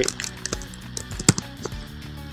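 A few computer keyboard keystrokes, the sharpest about a second and a quarter in, over a steady background music bed.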